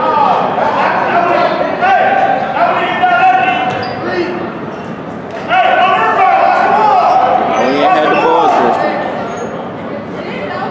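Basketball game in a gymnasium: indistinct voices of players and spectators calling out, with a basketball bouncing on the hardwood floor, echoing in the hall. The voices get louder about halfway through.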